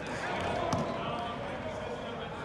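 A single sharp smack about three-quarters of a second in, over indistinct voices in the background.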